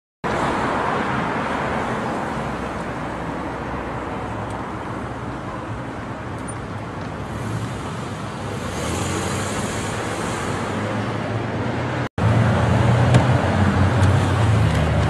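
Street traffic noise: a steady hiss of passing cars. The sound cuts out for an instant about twelve seconds in, then comes back louder with a low hum.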